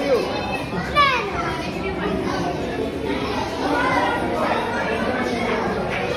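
Excited children's voices shouting and chattering, with two shrill, high-pitched squeals that fall in pitch, one right at the start and one about a second in.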